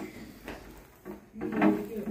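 Soft knocks and rustling as a wrapped glass bottle is handled on a glass tabletop, with a brief voice about a second and a half in.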